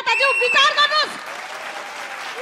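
Studio audience applauding, the clapping taking over about a second in once a shouted word ends.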